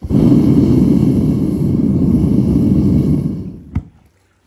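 Gas burner of a Devil Forge melting furnace running loud and steady, then dying away about three and a half seconds in as it is shut off with the copper melted, followed by a single short click.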